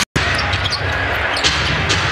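Basketball arena sound: crowd noise over a steady low rumble, with a few sharp knocks that fit a basketball being dribbled on a hardwood court. The audio drops out for a split second at the very start, at an edit cut.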